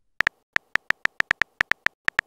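Phone keyboard typing sound effect: a quick run of short, pitched clicks, about six a second, one per letter as a text message is typed.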